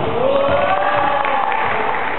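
Several voices in a large gym hall shouting a long drawn-out, held "aaah" at different pitches, starting about half a second in and trailing off near the end.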